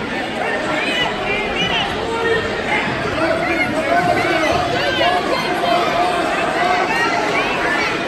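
Many voices talking and calling over one another at once: a spectator crowd's chatter, steady throughout with no one voice standing out.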